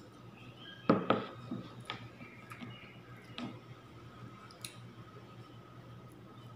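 A ceramic bowl is set down on a table with a sharp double knock about a second in. Scattered faint clicks and soft mouth sounds of eating with the fingers and chewing follow.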